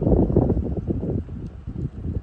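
Wind buffeting the microphone: an uneven low rumble, strongest in the first second and easing after.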